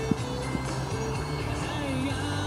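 Background music with held notes, and a sharp click just after the start.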